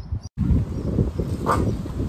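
Uneven low wind noise on the microphone outdoors. It comes in suddenly after a short dropout about a third of a second in.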